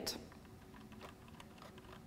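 Faint, irregular clicks of the SEL/PUSH EXEC jog wheel on a Sony HVR-Z5 camcorder being scrolled through its detents to step through clock-set values.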